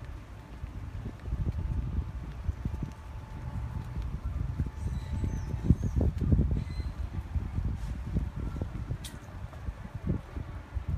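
Low, irregular rumbling and thumping on a handheld phone's microphone as it is carried along on foot, the kind of noise left by wind and handling. It gets louder about a second in.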